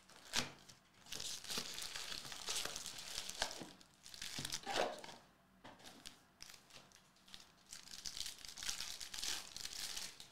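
Foil wrappers of Panini Mosaic basketball card packs crinkling and tearing as packs are ripped open, in several bursts of rustling, with a sharp tap about half a second in.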